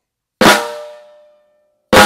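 Two flams played on a snare drum with wooden sticks, the snares on, about a second and a half apart. Each is one stick landing and the second coming in right after it, fattening the stroke into a single crack that rings out.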